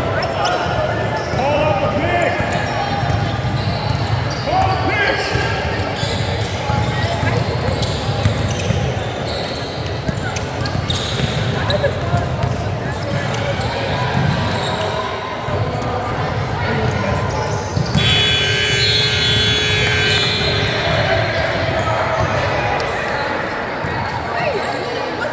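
A basketball bouncing on a hardwood gym floor as it is dribbled during play, echoing in a large hall, with voices of players and onlookers throughout. A sustained high-pitched sound lasts about two seconds near the end.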